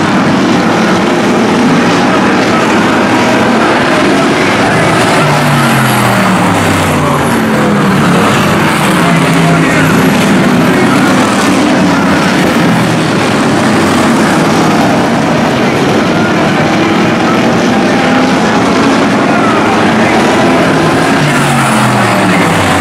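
Hobby stock race cars' V8 engines running hard in a pack on a short oval. Several engine notes overlap and fall in pitch a few times as the cars go by and back off for the turns.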